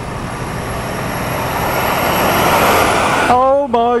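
Articulated lorry coming up from behind and overtaking close by, its engine and tyre noise growing steadily louder over about three seconds.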